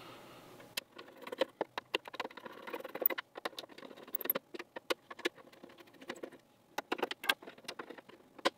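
A small screwdriver backing T10 Torx screws out of the plastic housing of a 5G home internet gateway: a run of light, irregular clicks and ticks from the bit, the screws and the case being handled, with a short quieter pause about three-quarters of the way through.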